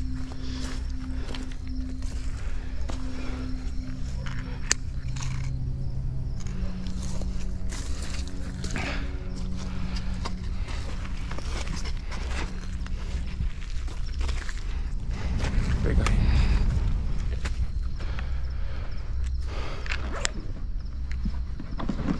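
Low, sustained background music notes that shift pitch every second or two. Scattered clicks and rustles run through it, with a louder low rumble about two-thirds of the way through.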